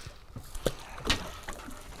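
A few light, sharp clicks and knocks from fishing tackle being handled at the boat's rail, over a faint steady hiss of wind and sea.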